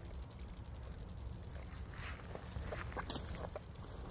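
Quiet outdoor ambience with a steady low rumble. A few faint light steps or rustles in grass come in the second half, with one brief sharp rustle about three seconds in.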